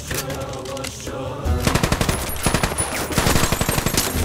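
Tense background music, then about a second and a half in a long burst of rapid automatic gunfire, many shots a second, fired into a car.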